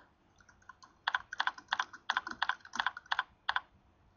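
Computer keyboard typing: a quick run of about fifteen keystrokes that starts about a second in and stops shortly before the end, as a short phrase is typed.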